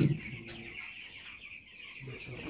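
A flock of young broiler chickens peeping and chirping, many high calls overlapping without a break.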